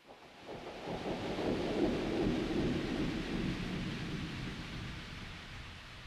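A long roll of thunder that swells over about two seconds and then slowly dies away.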